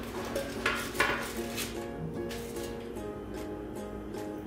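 Background music with a steady tune, over a few clinks of a knife and spatula against a metal baking tray as a baked salmon fillet is lifted out; the sharpest clink comes about a second in.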